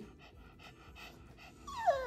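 A Shih Tzu gives a short whining vocalisation near the end, sliding down in pitch, after a quiet stretch.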